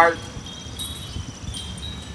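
Wind chimes ringing faintly, several high steady tones overlapping and fading, over a low rumble.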